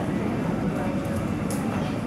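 Steady low rumble of background noise in a large indoor riding hall, with faint voices mixed in.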